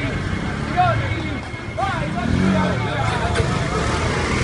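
Raised voices of people calling out in the street, over the steady low running of a fire engine's engine.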